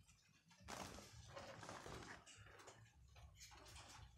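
Near silence: faint scattered rustles and clicks from about a second in.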